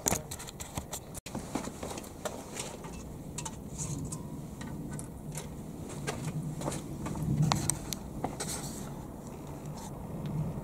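Scattered clicks, knocks and scrapes of a bar clamp and a wooden board being handled and set up on a sawhorse, over a low steady hum.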